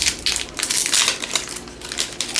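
Foil wrapper of a Topps Allen & Ginter trading-card pack crinkling as it is pulled open by hand, a run of irregular crackles.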